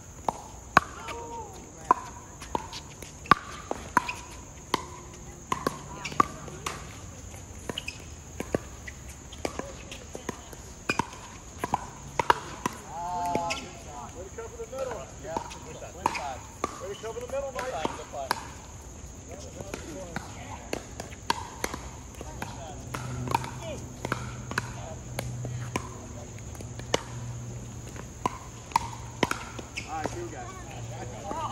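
Pickleball play: hard paddles hitting the plastic ball, with the ball bouncing on the court. The sharp pocks come at irregular intervals, often about a second apart, and some come from neighbouring courts.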